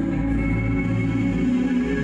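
Ambient instrumental background music with steady held notes.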